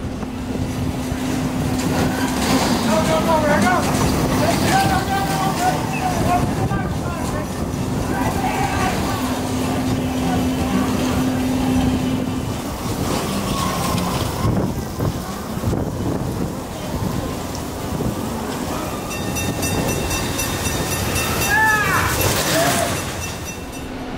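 Bolt roller coaster cars running along their steel track: a steady rolling rush with a low hum that stops about halfway through, mixed with people's voices.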